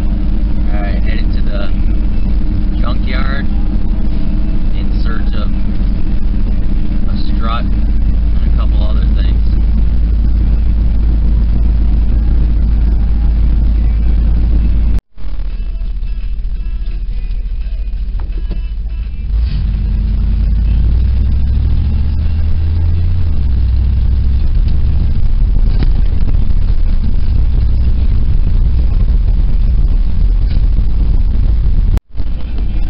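Engine and road noise heard from inside a moving vehicle's cab: a loud, steady deep rumble. There is a brief break about halfway through, after which the engine note rises and falls a few times as it accelerates.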